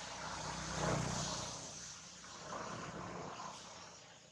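A motor vehicle's engine droning as it passes. It is loudest about a second in, swells again more weakly around three seconds, then fades away.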